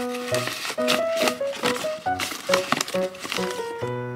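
Paper crinkling and tearing in quick rustles and snaps, over background music with a plucked-sounding melody.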